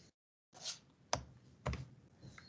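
A short soft noise, then two sharp clicks about half a second apart from someone working a computer, with the call audio dropping to dead silence between sounds.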